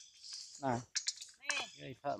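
Light, sharp clicks and taps of macaques picking small pieces of food off a metal tray, with a couple of brief vocal sounds between them.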